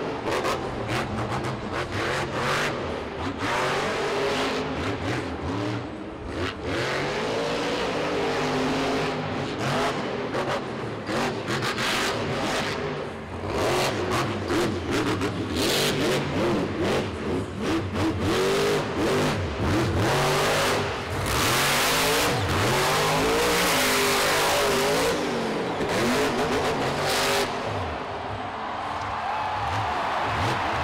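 Monster truck's supercharged big-block V8 revving hard and backing off again and again during a freestyle run, its pitch rising and falling throughout. Frequent sharp bangs are mixed in.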